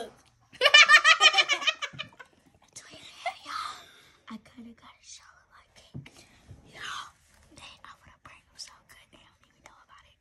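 Young girls laughing: a burst of loud, quick giggling for about a second and a half near the start, then soft stifled giggles and whispers.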